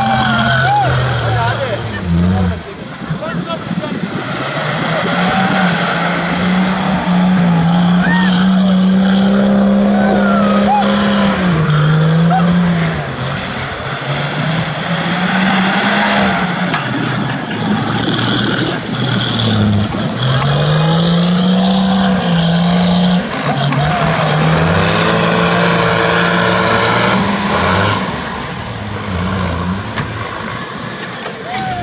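Jeep CJ Renegade's engine working hard through mud, its note holding steady for a few seconds at a time and then stepping up or down as the throttle changes.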